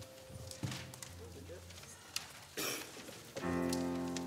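Soft instrumental music: quiet sustained notes, then a louder chord that starts about three and a half seconds in and is held. The congregation stirs under it, with faint clicks and a brief rustle.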